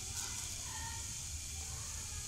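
Faint steady hiss with a low hum underneath: a karahi of minced meat simmering in water, bubbling gently at the edges.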